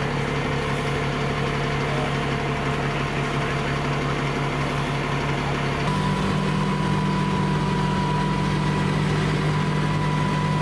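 Large fire truck's diesel engine idling with a steady low hum. About six seconds in the hum grows louder and a steady high whine joins it.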